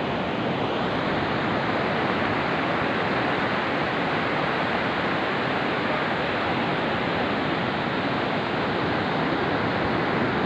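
Steady, even wash of ocean surf breaking on a beach, with no separate hoofbeats standing out.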